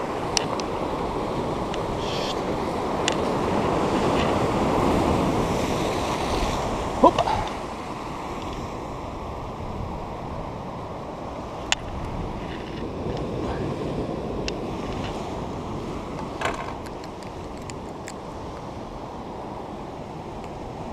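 Sea surf washing against a rocky shore with wind buffeting the microphone, louder for the first seven seconds or so and then quieter. A few short sharp clicks and knocks stand out, near the middle and again later.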